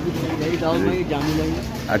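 Men's voices talking in the background, the words unclear.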